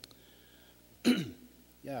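A man clearing his throat once, sharply, into a pulpit microphone about a second in. Speech starts right at the end.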